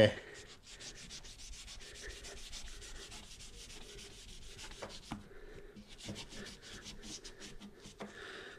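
Microfibre cloth rubbed quickly back and forth along a car door's rubber window seal, a quiet rapid scrubbing with a couple of brief pauses. The seal is being wiped clean of grease and grime with all-purpose cleaner.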